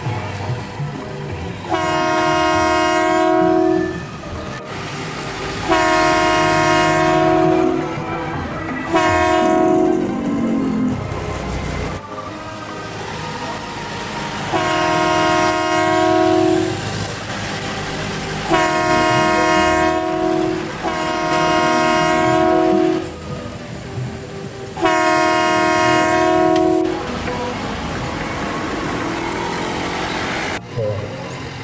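Train-style multi-tone air horn of an odong-odong tour train, sounding about seven blasts of roughly two seconds each, one of them shorter and ending in a falling slide. Road and engine noise fills the gaps between blasts.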